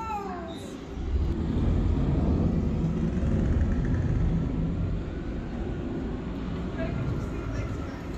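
Storm soundscape played in the ark exhibit: a low rumble of water crashing against the ship's wooden hull, swelling about a second in and running on.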